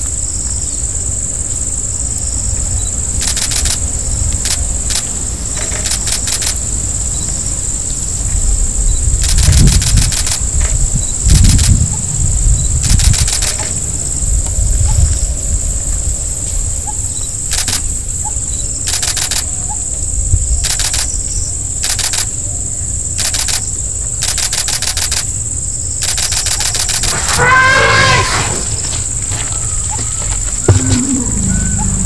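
Insects droning steadily at a high pitch, with repeated short bursts of rapid clicking every second or two, over a low rumble that swells about a third of the way in. Near the end comes one brief wavering animal call.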